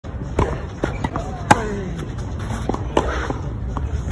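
Tennis rally on a clay court: a ball struck by rackets and bouncing, heard as a series of sharp knocks, the loudest about a second and a half in. A brief voice with falling pitch follows that loudest hit.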